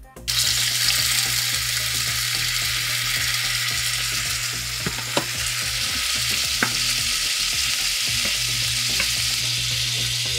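Shrimp sizzling as they fry in olive oil in a nonstick pan, a steady loud hiss that starts abruptly. They are stirred with a wooden spatula, giving a few sharp clicks.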